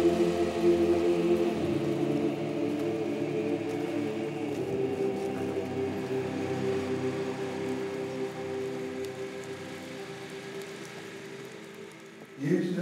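Background music of slow, sustained chords that shift a couple of times and gradually fade out.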